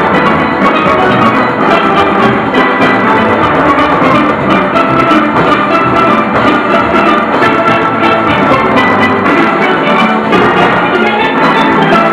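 A steel orchestra playing live: many steelpans sounding a busy, fast-moving melody together over a steady drum and percussion beat.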